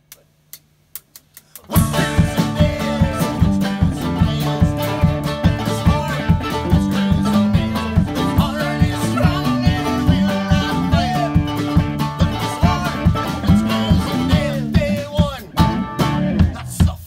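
A few sharp clicks, then a live country-rock band kicks in about two seconds in and plays on with a steady driving beat. The band is electric guitar, mandolin, bass guitar and drum kit.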